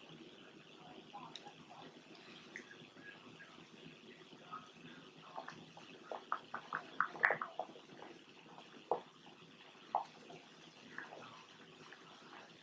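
Table salt trickling from a container into a plastic measuring cup: a faint, steady pour, with a run of small ticks about halfway through.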